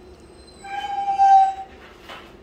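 German shepherd puppy whining once: a single high, steady whine about a second long that dips slightly in pitch at the end.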